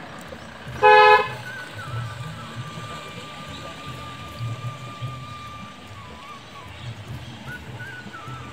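A vehicle horn gives a single short toot about a second in. A faint thin high steady tone follows, wavering slightly, for several seconds.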